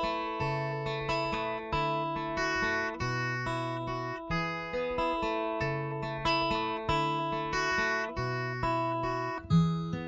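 Steel-string acoustic guitar with a capo, played in a steady, repeating picked pattern, amplified through the iRig Acoustic Stage with its clip-on sound-hole microphone and piezo pickup blended half and half. Near the end a louder attack comes in as the signal changes to the microphone alone.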